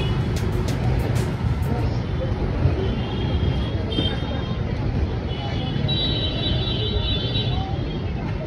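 Busy street ambience: traffic and scattered background voices in a steady noisy wash. The tail of background music with a beat runs through the first two seconds.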